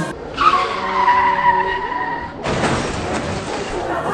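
Tyre-screech sound effect dropped into the soundtrack: a held squeal sliding slightly down in pitch for about two seconds, then a rough, noisy skid for the rest.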